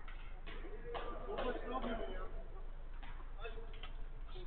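Indistinct voices of players calling out across the pitch, heard distantly, over a steady low hum.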